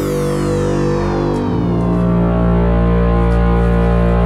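Electronic background music: held synthesizer tones with a sweep falling in pitch, and the bass moving to a new, deeper note about a second and a half in.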